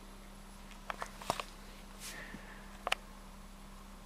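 Quiet room tone inside a parked truck cab: a faint steady low hum with a few faint short clicks.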